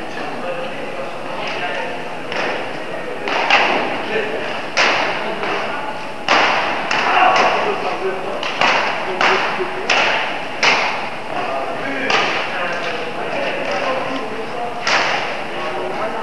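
Badminton rally: rackets striking the shuttlecock in sharp, irregular hits about one to two seconds apart, with thudding footsteps on the court floor. Each hit echoes in a large sports hall.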